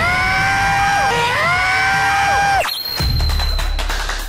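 A man yelling as loud as he can into a sound level meter, one long strained shout of 'give me lots of bonus' that bends up and down in pitch and cuts off suddenly about two and a half seconds in. After it, a steady high tone sounds over background music.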